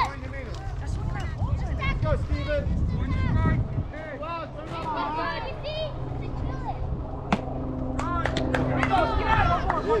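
Many voices of players and spectators calling out and chattering at once over a low steady hum, with one sharp smack about seven seconds in and a few lighter clicks soon after.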